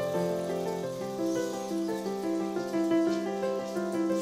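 Background instrumental music: a melody of held notes that change every fraction of a second.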